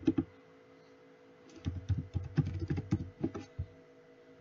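Typing on a computer keyboard: two keystrokes at the start, then a quick run of keystrokes from about one and a half seconds in until near the end, over a steady electrical hum.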